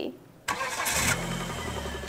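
After a brief hush, an engine starts about half a second in and settles into a steady low idle.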